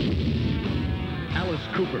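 A loud boom with a deep rumble, like a stage pyrotechnic blast, bursts in at the start and carries on for about a second over live heavy metal music. A man's voice comes in near the end.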